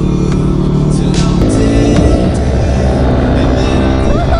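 Small dirt bike engine running under background music, its note changing and rising about a second and a half in as the bike speeds up.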